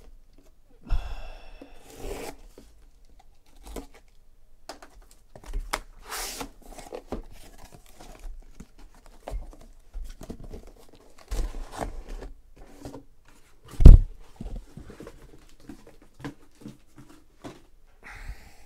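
Utility knife slicing packing tape on a cardboard shipping case, then tape tearing and cardboard flaps scraping and rustling as the case is pulled open, in irregular bursts. One loud thump about fourteen seconds in.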